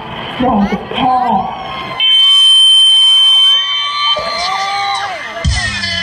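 A man's voice speaks briefly in Thai over a PA system. Then a loud, steady, high electronic beep holds for about a second and a half, stops sharply, and is followed by sliding synth tones; a dance track with a heavy beat starts near the end.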